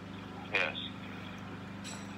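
Steady low electrical hum, with one brief voice sound about half a second in and a faint click near the end.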